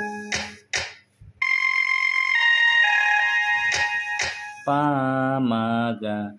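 Casio SA-21 portable keyboard: two clicks of its buttons early on, a short pause, then a phrase of held notes in a high voice, with two more clicks partway through. Near the end a man's voice sings two held notes with a wavering pitch.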